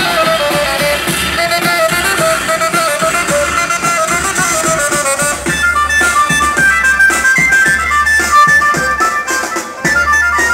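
Loud amplified band music played through horn loudspeakers on a carried festival tower, with a steady bass line under a melody. About halfway through, a higher, brighter melody line takes over.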